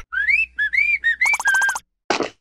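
Animated yellow larva whistling a short tune of rising and falling notes, the last one fluttering rapidly.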